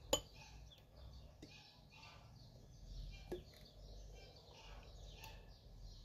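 A plastic spoon stirring a paste in a small glass bowl, knocking faintly against the glass in a few separate clinks.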